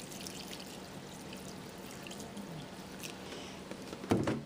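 Water poured in a steady stream from a plastic gallon jug into a glass bowl of dehydrated spaghetti squash, covering the dry strands to rehydrate them.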